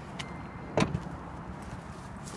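A car door of a 2010 Toyota iQ shutting with a single sharp thump about a second in, just after a steady electronic beep tone stops.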